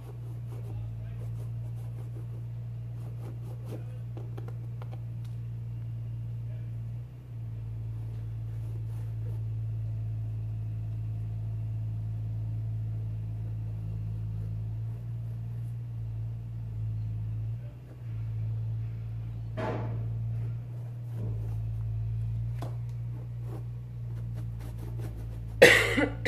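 A steady low hum runs throughout, broken by one short sudden sound about three-quarters of the way through. Just before the end a woman coughs loudly.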